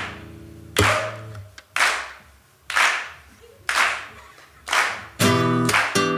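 Nylon-string classical guitar played percussively: sharp, mostly muted strokes about once a second, each fading away. A full chord rings out near the end.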